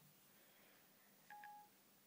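Siri's short two-note activation chime on an iPhone, played through the phone's small speaker about a second and a half in. It signals that Siri is open and listening.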